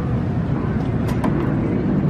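Steady low rumble of outdoor city background noise on an open rooftop, with a faint tap about a second in.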